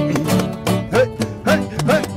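Acoustic folk band playing an instrumental passage: plucked guitar and double bass under a rhythmic clatter, with short swooping, bending notes repeating two or three times a second.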